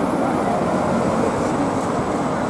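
A double-decker bus passing close by, its engine and road noise steady and fairly loud.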